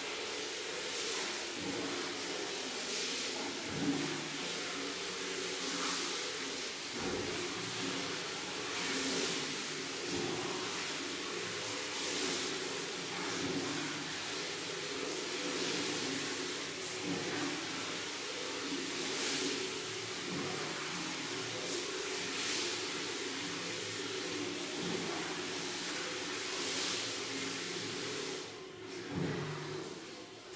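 A steady machine hum with a hiss that swells and fades every two to three seconds.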